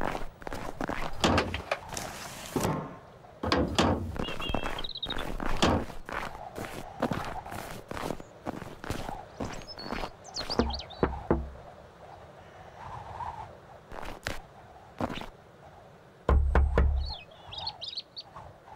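Animated-cartoon sound effects: a van door shutting and footsteps through snow, then knocking on a wooden front door, the heaviest knocks near the end. Light background music and a few short bird chirps run underneath.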